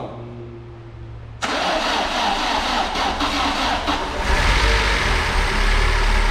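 Car engine starting for the first time after a head gasket replacement and cylinder head refit. A brief low hum comes first, then about a second and a half in the engine fires and runs, louder from about four seconds in.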